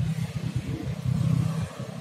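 A motor vehicle's engine running, heard as a low rumble that eases off near the end.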